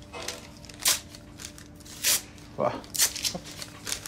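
Paper being grabbed and handled: three short, sharp rustles, about one a second.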